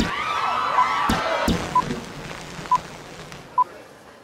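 Outro logo sound effect: sweeping, whooshing pitch glides with two sharp hits, then four short beeps about a second apart as the sound fades out.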